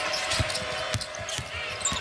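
A basketball dribbled on a hardwood court, several separate bounces, over a steady arena crowd background.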